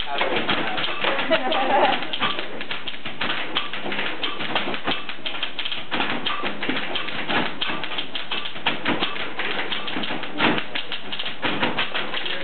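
Several manual typewriters played as percussion, their keys clattering in a dense, rapid run of clicks.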